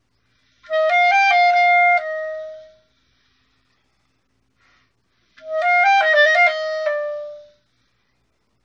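Solo clarinet playing two short phrases, each a few quick stepping notes that settle onto a held lower note and fade away. The first starts about a second in, the second a little past halfway, with a silent pause between.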